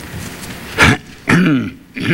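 A man clearing his throat close to a microphone, twice: a sharp rasp about a second in, then a lower, voiced one that falls in pitch.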